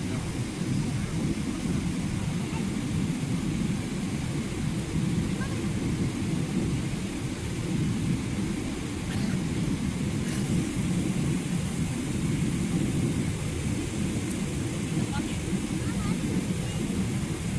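Steady low roar of a Boeing 777-300ER's cabin in the climb after takeoff: the GE90 engines at climb power and air rushing past the fuselage, heard from a seat in the rear cabin.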